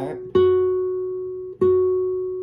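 Nylon-string classical guitar playing the F sharp on the second string at the seventh fret. The note is plucked twice, about a second and a quarter apart, and each pluck rings out and slowly fades.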